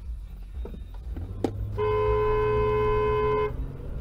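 Car horn giving one steady honk of about a second and a half, starting near the middle, over the low rumble of a car running; a sharp click comes just before it.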